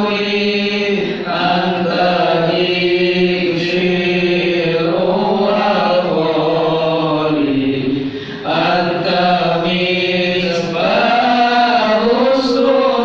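A man chanting Islamic devotional verses in Arabic, in long held, wavering melodic phrases, with a brief pause for breath about eight seconds in and a shorter one near the end.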